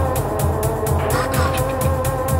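Techno track: a steady kick drum about twice a second with fast hi-hat ticks under a held synth tone, and a sliding synth sweep about a second in.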